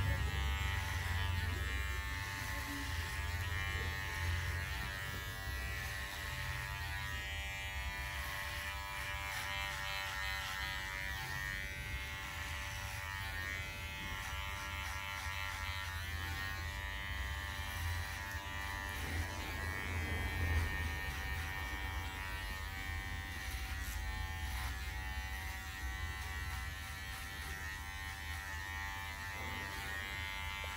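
Electric hair clippers fitted with a 4.5 mm guard, buzzing steadily as they cut the short hair on the sides of a head, the level rising and dipping slightly as the blade moves through the hair.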